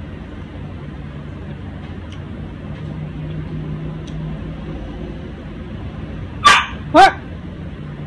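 A dog barking twice in quick succession near the end, loud and close, each bark sliding down in pitch.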